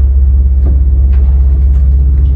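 A 1978 ZREMB passenger elevator travelling in its shaft, heard from inside the car: a loud, steady, deep hum, with a few light knocks.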